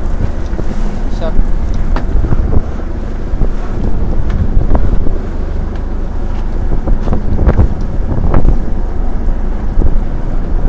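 Strong wind buffeting the action camera's microphone on a small open boat at sea, a heavy steady rumble, with a few sharp knocks scattered through it.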